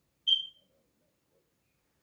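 A single short, high-pitched beep about a quarter second in, dying away within about half a second; otherwise near silence.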